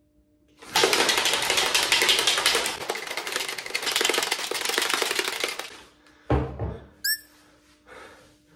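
A lidded plastic container shaken hard and fast by hand: a loud, dense rattling shake lasting about five seconds that then stops. Near the end a brief thump and a short rising whistle.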